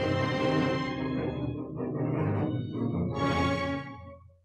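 Orchestral film-score music: the separately recorded string section (the string pass) of an action cue playing back, with sustained string tones. It starts to fade near the end.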